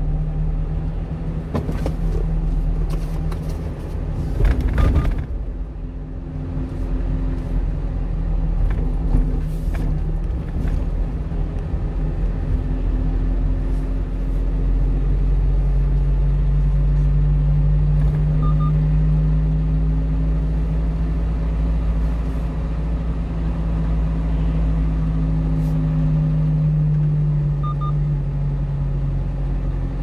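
The diesel engine of a 1-ton refrigerated box truck running steadily, with low road rumble, heard from inside the cab. A short burst of knocks and rattles comes about two to five seconds in, and the engine hum grows stronger from about halfway.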